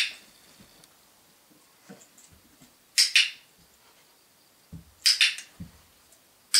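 Two sharp double clicks, about three seconds and five seconds in, with soft low thuds just before and after the second pair.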